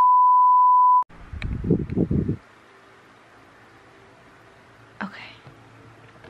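A steady high beep tone, a single edited-in bleep, lasting about a second. Then a short stretch of low, muffled voice and faint room tone.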